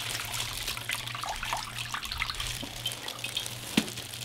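Water trickling and dripping back into a stainless steel bowl as a soaked cotton hoodie is squeezed out by gloved hands, with irregular small splashes. There is one sharp tap near the end.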